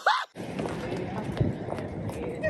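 City street noise, a steady hum of traffic and passers-by, with footsteps on pavement as people walk across a crosswalk. It follows a brief voiced exclamation and a sudden break at the very start.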